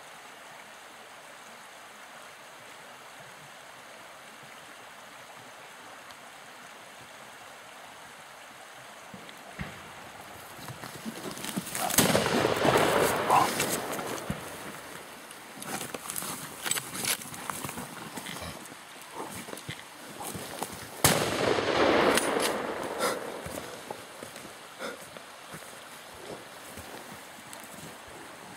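Two loud shots from a hunting gun, about nine seconds apart, fired at a wild boar charging at close range. Each shot is followed by about two seconds of loud commotion, after a steady hiss of outdoor background noise.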